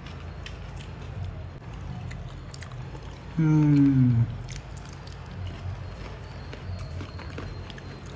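A man biting into and chewing a piece of grilled chicken, with faint scattered chewing clicks over a low steady background. About three and a half seconds in, a short voiced 'mm' with falling pitch.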